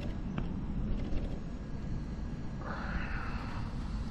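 Steady low outdoor rumble, with a single sharp click about half a second in and a brief hiss near the three-second mark.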